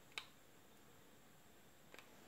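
Near silence: room tone, with one faint short click a fraction of a second in and another, fainter one near the end.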